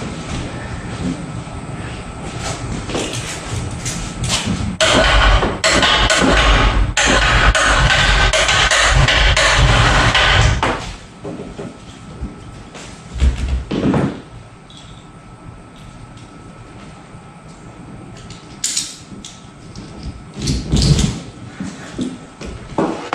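Overhead electric hoist motor running for about six seconds, then cutting off abruptly, followed by a few knocks and clinks.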